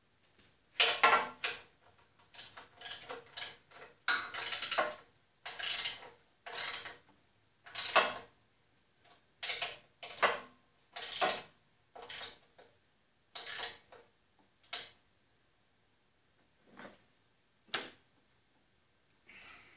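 Ratchet wrench driving a bolt into the steel frame of a rear-engine riding mower: a run of ratcheting strokes, each a short burst of clicks, about one a second, coming more slowly and faintly near the end.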